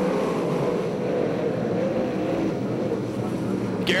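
A pack of dirt-track sprint cars racing under power into a turn, their V8 engines sounding together as one dense, steady engine noise whose pitch wavers slightly up and down.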